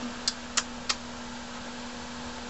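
Three quick kissing smacks of lips, about a third of a second apart, over a steady low hum.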